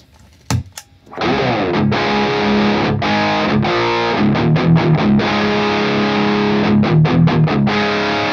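Gibson Les Paul Standard tuned to drop C sharp, played through a Maestro Ranger Overdrive pedal into a Victory Super Kraken amp: overdriven chords and chugging riffs with short stops, warm with the high end cut. A click of the pedal's footswitch comes about half a second in, and the playing starts about a second in.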